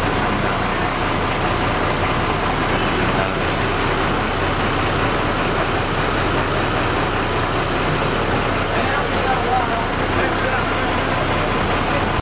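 Steady engine and road noise heard from inside a crowded bus cabin, with people talking under it.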